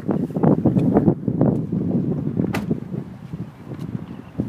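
Rustling and knocking of a person climbing out of a car seat, with wind on the microphone, dying down after about two seconds; one sharp click about two and a half seconds in.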